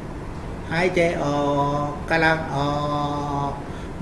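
A Buddhist monk's voice slowly intoning a guided-meditation breathing cue, 'breathe out, going out', in two long, drawn-out phrases held on a steady pitch like a chant.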